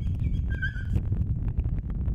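Steady low background rumble, with a brief faint high chirp about half a second in.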